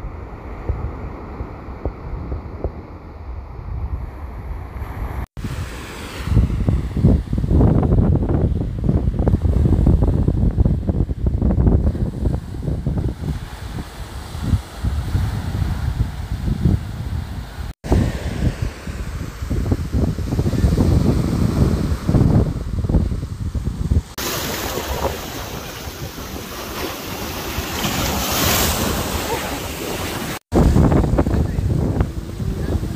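Small waves breaking and washing up a sand beach, with wind buffeting the microphone. The sound drops out briefly twice where clips are joined. The last few seconds bring a brighter, hissier wash of surf.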